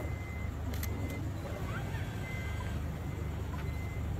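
A vehicle idling with a steady low rumble, a thin high electronic tone sounding on and off over it, and a few sharp clicks.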